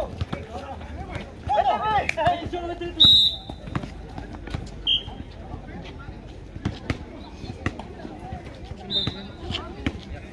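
A basketball bouncing on an outdoor asphalt court during a game, with repeated sharp knocks of the ball and feet, and a few short high squeaks of sneakers, the loudest about three seconds in. Players' voices call out about two seconds in.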